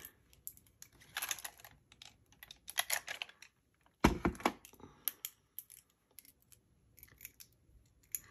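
Small clicks and taps of pens and plastic being handled on a desk, in short clusters, with one louder thump about four seconds in as something is set down on the desk.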